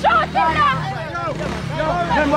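Several people shouting and arguing in raised, overlapping voices, over a steady low hum.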